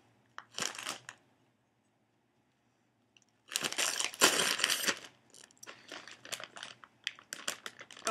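Crinkling and crackling of a foil-lined Lay's potato chip bag being opened and rummaged through: a brief rustle, then a louder stretch of crinkling about halfway through, followed by a run of short crackles.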